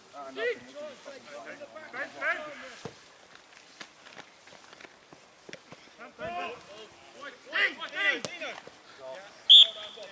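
Players' voices shouting in short calls across an open football pitch, with a few dull knocks of play in between. A short, shrill whistle blast is the loudest sound, near the end.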